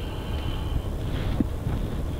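Low, steady rumble of a car rolling slowly, heard from inside the cabin, with a faint thin high tone during the first second.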